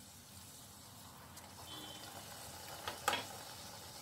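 Puri deep-frying in hot oil in a kadai: a faint, steady sizzle. About three seconds in there are a couple of light clicks, likely the wire strainer touching the pan.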